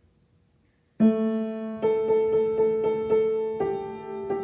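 Piano playing starts suddenly about a second in: a low note rings on under a steady run of single notes, about four a second.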